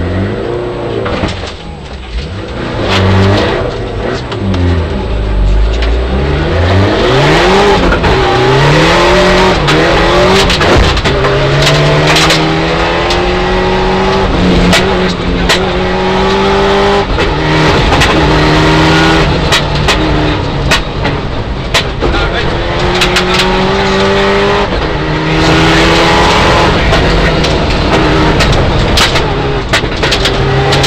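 Mitsubishi Lancer Evolution IX rally car's turbocharged four-cylinder engine at full stage pace, heard from inside the cabin. It climbs in pitch through each gear and drops back sharply at the shifts and lifts for corners, over a run of sharp clicks and knocks.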